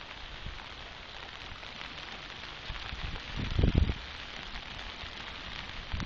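Steady hiss of rain falling on the platform and tracks, with a brief cluster of low rumbling buffets about three and a half seconds in.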